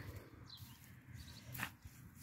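Faint scrapes of a small hand trowel stirring loose garden soil, with two short scrapes standing out: one about half a second in and one near the end.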